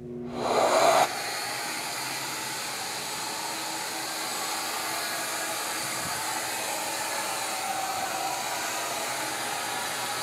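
Shaper Origin handheld CNC router's spindle starting up, louder and rising for about the first second, then running steadily as it cuts a pocket in plywood.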